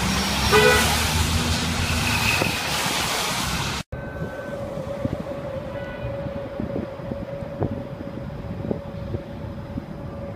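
Busy city street traffic with a bus going past close by and a short car horn toot about half a second in. At about four seconds the sound cuts abruptly to quieter, distant city noise with a steady hum.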